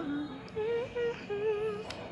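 A woman humming a tune in short, wavering held notes, with a sharp click near the end.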